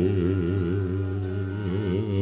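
A man's voice chanting one long held note with a steady wavering vibrato, over a low steady drone: a sung sulukan mood-song of a wayang kulit shadow-puppet performance.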